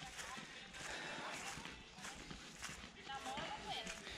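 Faint, distant voices of people chatting, with footsteps on dry grass and dirt as someone walks downhill.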